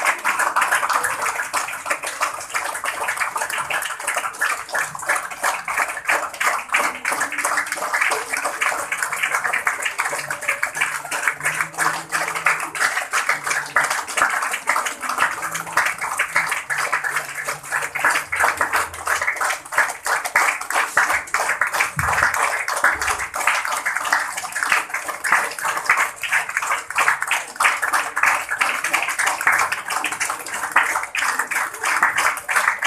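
A crowd applauding steadily, many hands clapping without a common beat.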